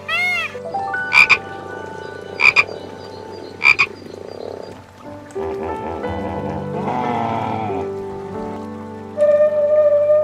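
Peacock calling three times, short loud honks about a second and a quarter apart, over soft background music. From about five seconds in, a hippopotamus grunts and rumbles, lower and rougher.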